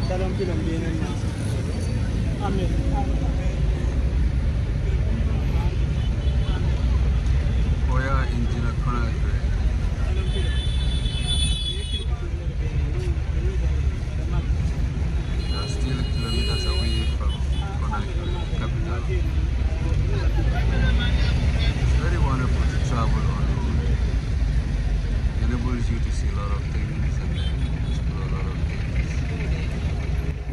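Steady low rumble of a vehicle's engine and road noise heard from inside the cab while driving, with indistinct voices over it.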